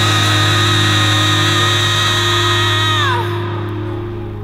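A rock band's closing chord held out, with a steady low bass note under high sustained tones. The high tones slide down in pitch and cut off about three seconds in, leaving the low notes ringing and slowly fading.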